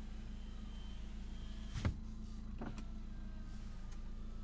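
Power window motor lowering a car's front door glass after a one-touch press of the switch, over the steady low hum of the idling turbo-diesel, with a sharp click about two seconds in.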